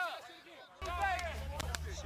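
Men's voices on a practice field, with the tail of a shout ('oh, yeah') at the start and fainter talk after it. About a second in, a steady low hum comes in under the voices, and there are a few short clicks near the end.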